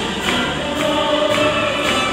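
Orchestra and choir performing, with hands clapping along on the beat about twice a second.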